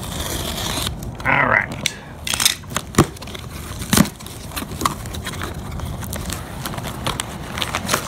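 Packing tape on a cardboard box being slit with a utility knife, then the flaps pulled open and bubble wrap rustled and crinkled by hand. Sharp snaps and clicks stand out, the loudest about three and four seconds in.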